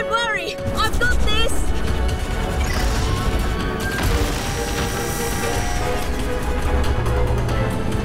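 Cartoon background score with a low rumbling sound effect underneath, and a few short vocal exclamations in the first second or so.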